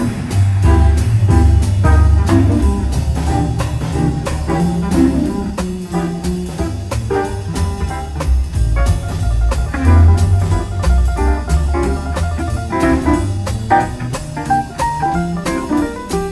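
A jazz quartet playing live: guitar, piano, bass and drum kit, with a steady bass line and cymbals throughout.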